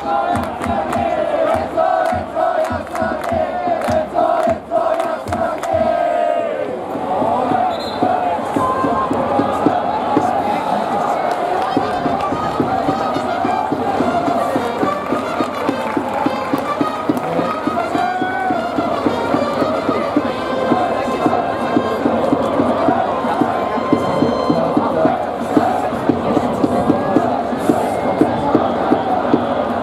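Large baseball stadium crowd chanting together. For about the first six seconds many voices hold one long note, then a denser chant runs on over regular beats.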